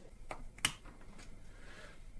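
Light clicks of a small bicycle bearing being handled between the fingers, with one sharp click about two-thirds of a second in.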